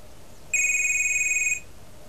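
Computer's electronic alert: one high, rapidly warbling tone lasting about a second, marking a pop-up message being sent to another computer's screen.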